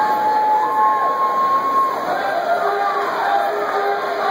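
Loud crowd of spectators cheering in an indoor pool hall, with long, drawn-out shouts held for about a second each over the din.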